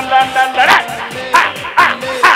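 Held electronic keyboard chord with a man's voice breaking in as short, loud shouted bursts, about two a second from about half a second in.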